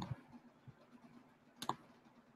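Two faint clicks in a quiet room: the first, with a low thud, comes right at the start and is the loudest, and the second comes about one and a half seconds later.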